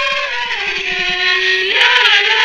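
Singing with musical backing: a voice holds long notes, drops to a lower note about half a second in, and moves up again near the end.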